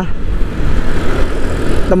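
Honda Vario scooter under way: steady low rumble of wind on the microphone mixed with the single-cylinder engine and road noise.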